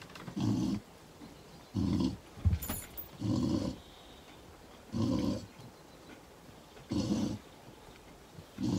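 A dog making short, low vocal sounds, five of them, about one every second and a half.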